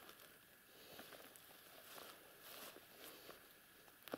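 Near silence, with faint rustling of grass and weeds being pushed through.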